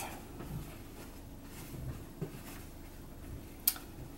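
Faint handling of a cotton fabric face mask as it is folded in the hands, with a soft tick about halfway and a short sharp click near the end.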